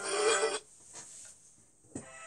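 Paper page-turn sound effect from a storybook app: a short rustling swish of about half a second, with the background music cut off under it. A single click comes near the end.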